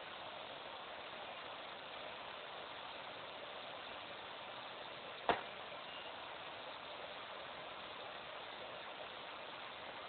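Steady low hiss of a broadcast audio feed, with a single sharp click about five seconds in.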